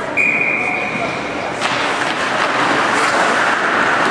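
Ice hockey game in an echoing arena: a single high whistle held for over a second, then a sharp crack of a stick on the puck about one and a half seconds in, followed by the rising voices of spectators.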